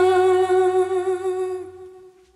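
The end of a song: a long held sung or hummed note with a slight vibrato over sustained backing, fading out near the end.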